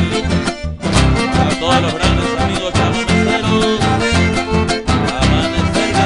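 Chamamé played live by a band: acoustic guitar and electric bass on a steady lilting beat, the music stopping for an instant under a second in before the band comes back in together.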